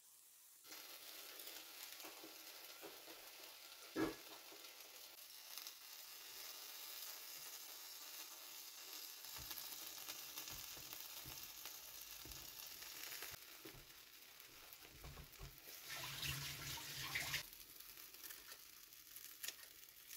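Egg and bacon tortilla frying in a frying pan, a steady sizzling hiss that starts just under a second in. A single sharp knock about four seconds in is the loudest moment, and a louder rustling stretch comes near the end.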